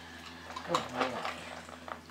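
A woman's voice praising a dog with a short "good boy", over a faint steady low hum.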